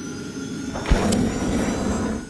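Animated-logo sound effect: a rushing whoosh with faint sustained tones, a sudden deep thump about a second in, then a louder rush.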